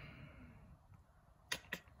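Quiet room tone, with a few brief clicks near the end.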